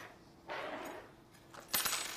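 Metal knitting needles being handled on a table: a soft rustle, then a short clatter of clicks and metallic clinks near the end.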